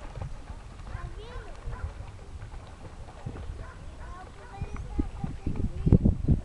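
Wind rumbling on the microphone, with faint, indistinct voices in the background; the wind buffeting grows louder about five seconds in.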